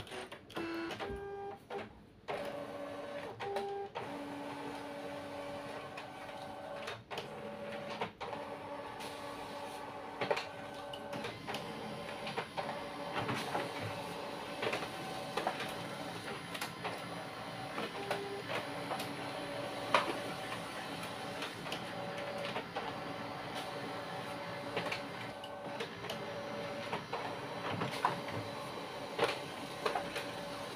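Canon imageCLASS MF229dw black-and-white laser multifunction printer running an automatic two-sided copy job. The document feeder pulls the originals through while the printer feeds and prints the sheets. It makes a steady motor whir with held tones and frequent clicks, and a copied page comes out near the end.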